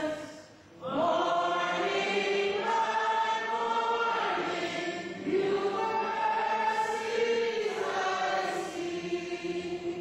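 A congregation singing a hymn together in long, held phrases, with a short break for breath just under a second in.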